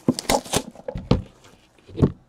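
A trading-card hobby box being handled and set on a table: a quick run of taps and knocks in the first second, then a pause and another knock at the end.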